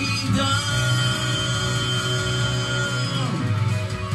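Karaoke cover of a J-rock song: a rock backing track with guitar, under a singer holding one long note that slides down near the end.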